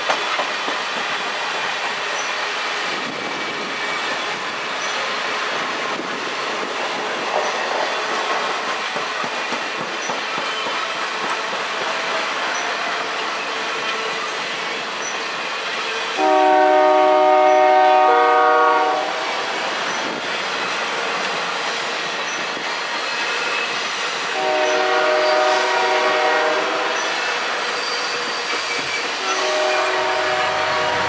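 Circus train passenger cars rolling past, their wheels clicking steadily over the rails. A train's air horn sounds a long multi-note chord a little past halfway, another about five seconds later, and starts again at the very end.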